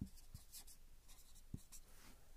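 Marker pen writing on a whiteboard: faint, short scratchy strokes as a word is written out.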